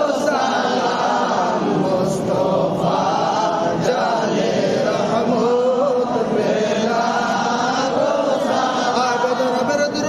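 Men chanting a milad qiyam salutation to the Prophet Muhammad in a steady, wavering melody, with a lead voice and others joining in.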